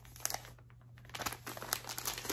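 Glossy gift wrapping paper crinkling in scattered short crackles as a wrapped present is handled, with a brief lull about half a second in before the crackling picks up again.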